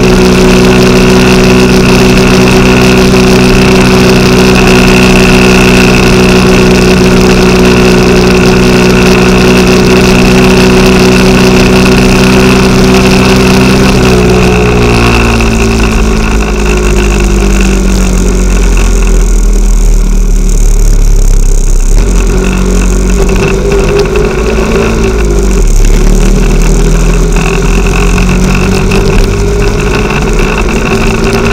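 Motorcycle engine heard from the rider's seat, running at steady revs with wind rumble on the microphone. About halfway through, the revs fall as the bike slows; they pick up again a few seconds before the end.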